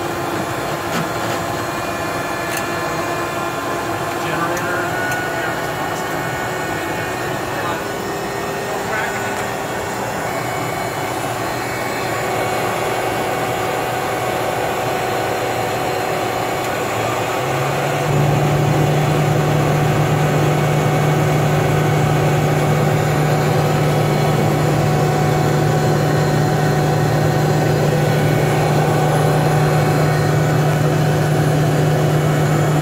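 GE H80 turboprop engine of a DHC-3 Otter floatplane running at low power while taxiing on the water, heard inside the cockpit. About eighteen seconds in, a steady low drone comes in and the engine sound steps up louder, then holds steady.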